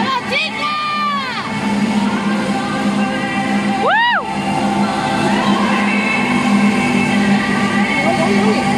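Music for a rhythmic gymnastics routine playing over a hall crowd. Spectators give two high, rising-then-falling cheering shouts, one just after the start and one about four seconds in.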